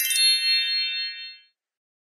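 A short electronic chime: a quick run of bright bell-like notes that rings on and fades out about a second and a half in.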